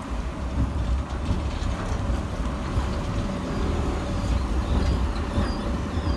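Sheffield Supertram Siemens-Duewag tram pulling away from a stop and moving past at low speed, its wheels and running gear giving a heavy low rumble with a steady thin whine over it.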